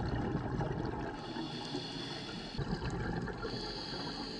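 Steady underwater ambient rush picked up by a camera in an underwater housing on a reef dive.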